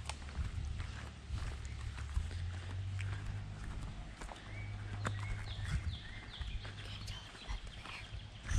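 Footsteps on a dirt woodland trail, as short uneven scuffs and crunches, over a steady low rumble on the microphone. A few short high chirps come a little past the middle.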